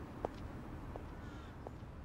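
Footsteps of hard-soled shoes on pavement, three even steps at a steady walking pace, over a faint low outdoor rumble.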